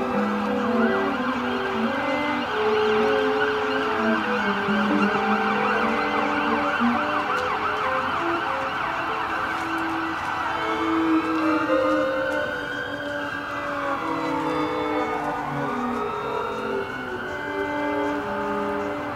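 A live instrumental ensemble holds long, shifting notes while an emergency-vehicle siren sounds over it. The siren is a fast warble in the first half, then slow wails that rise and fall, each sweep taking a few seconds.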